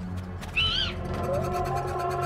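Eerie cartoon soundscape: a low steady drone with a short, high, bird-like call that rises and falls about half a second in.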